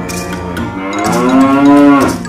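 A cow's moo: one long call that rises in pitch and grows louder toward its end, then stops suddenly, over a light music jingle.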